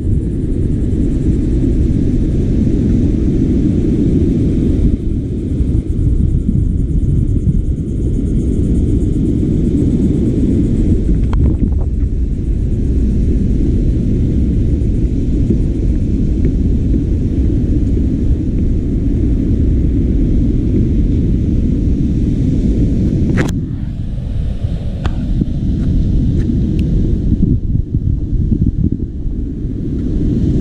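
Wind buffeting the camera microphone: a steady, heavy low rumble. A few short clicks break through, the sharpest about three-quarters of the way in.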